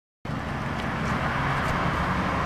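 Passing road traffic: a car's engine and tyre noise as a steady hiss with a low hum, starting suddenly a fraction of a second in.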